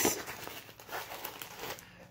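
Clear plastic bag of plastic model-train coal crinkling as it is drawn out of its cardboard box, loudest in the first second and then fading.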